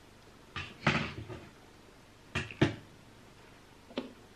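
Handling noise: a few sudden knocks and clatters as objects are picked up and set down, one a little under a second in, two close together about two and a half seconds in, and a small one near the end.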